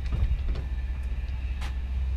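Steady low rumble of outdoor background noise, with a few faint clicks.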